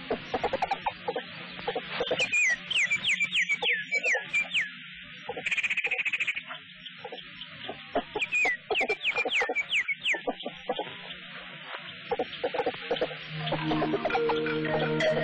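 Bird-like animal calls: rapid clicks and short, falling whistled chirps in two bursts, with a buzzy trill between them. Music with steady tones comes back near the end.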